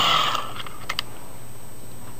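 Hand-cranked dynamo of a 'Wee' Megger insulation tester whirring down as the cranking stops, dying away within half a second. A few light clicks of handling follow about a second in.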